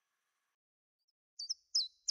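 Silence, then about one and a half seconds in a small bird starts chirping: short, high notes, each sweeping downward, a few per second.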